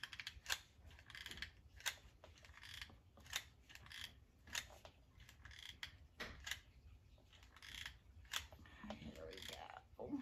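Faint, irregular clicking, about one or two clicks a second, as a hot glue gun's trigger is squeezed to feed glue while the nozzle is pressed into dry Spanish moss, which crackles under it.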